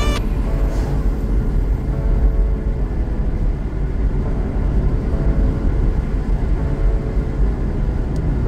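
Steady low rumble of a car driving along a road, engine and tyre noise. The background music cuts off just after the start.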